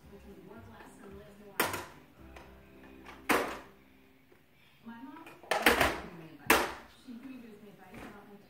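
A toddler handling plastic toys: four sharp, loud knocks or clatters, a second or two apart, among voices.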